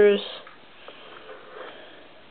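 A short sniff, then quiet handling noise with a faint click or two about a second in, as the bomb-release levers of a Lego model are worked and the small plastic bombs drop.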